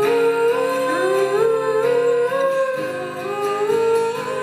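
Two female voices singing long held notes in harmony, stepping upward in pitch, over acoustic guitar accompaniment.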